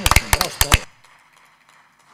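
Brief applause from a handful of people: a quick run of sharp hand claps that stops abruptly less than a second in.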